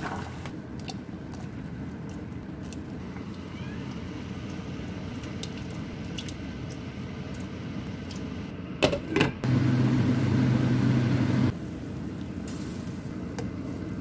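Kitchen handling sounds: food going into a stainless steel pot of water, small clicks and knocks over a steady background noise. About nine seconds in come a couple of loud knocks, then a loud low hum for about two seconds that stops suddenly.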